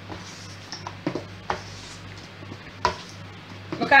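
Metal spoon stirring and folding thick cake batter with chopped almonds in a stainless steel bowl: soft wet scraping with a few light knocks of the spoon against the bowl, the clearest one near the end.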